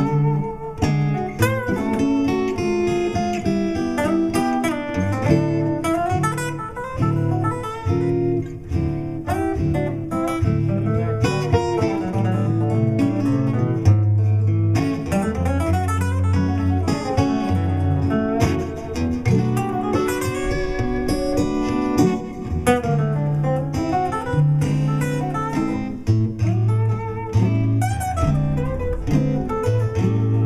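Two acoustic guitars playing an instrumental passage of a live blues-rock song, strummed chords under single-note lead lines, some notes bending in pitch.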